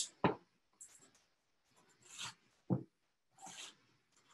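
Chef's knife cutting into a head of cabbage on a plastic cutting board: a knock just after the start, then a few brief scraping cuts and a light thump, all faint.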